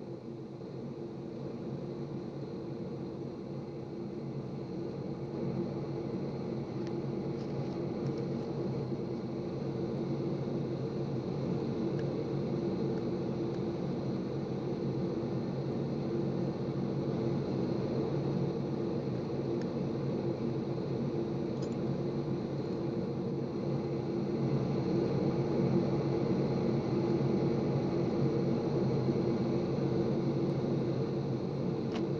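Steady drone of a jet bomber's engines heard inside the cockpit and fuselage, a constant low hum with a hiss over it, slowly growing louder.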